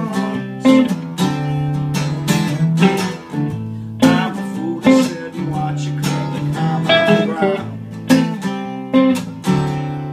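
Takamine acoustic guitar strumming chords together with an electric guitar playing along, in an instrumental break of a song with no singing.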